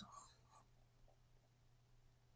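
Near silence, with a few faint, brief scratches in the first half second, typical of a stylus drawing on a tablet.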